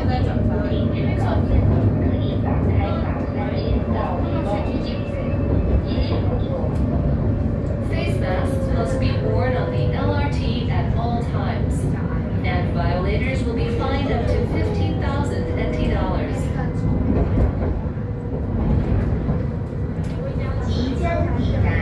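Kaohsiung light rail tram running along the line, heard inside the car: a steady low rumble with a faint motor whine that dips slightly in pitch midway. Indistinct voices talk over it.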